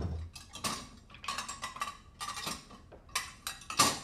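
Crockery, glasses and cutlery clinking and clattering as they are handled, a string of separate sharp clinks, some with a short ring.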